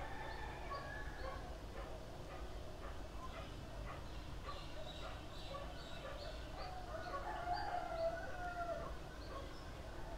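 Birds calling outdoors: short high chirps throughout, with one louder, longer call about seven seconds in.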